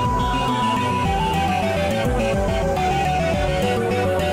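Instrumental background music. A held high note gives way about a second in to a melody of short notes stepping up and down.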